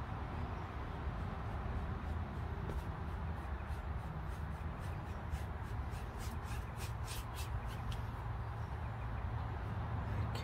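Bristle brush scrubbing oil paint into canvas, blending wet on wet: short scratchy back-and-forth strokes at about four a second, strongest about six to eight seconds in, over a steady low outdoor rumble.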